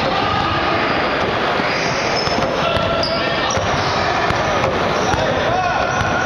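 Basketball game in a gym: the ball bouncing, several short, high sneaker squeaks on the hardwood floor, and indistinct players' voices over a steady din.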